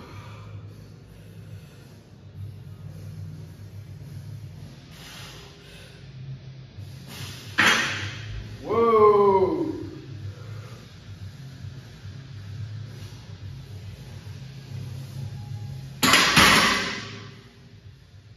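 Background music under a barbell bench press set. About seven and a half seconds in comes a loud breath, then a strained groan that falls in pitch; near the end a loud burst of noise as the set ends and the bar is racked.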